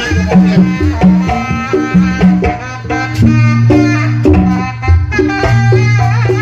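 Kendang pencak ensemble playing: large Sundanese kendang drums beat a fast, dense rhythm of pitched strokes under a melody line. Deep held tones sound in the second half.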